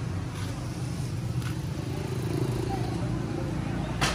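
A steady low engine-like hum with faint voices talking in the background.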